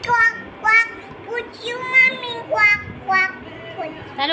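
A baby vocalizing in a string of short, high-pitched calls and squeals, roughly six of them in four seconds.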